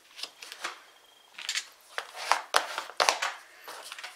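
Folded card stock being handled and slid across a paper grid mat: a series of short, papery scrapes and rustles, about half a dozen in all.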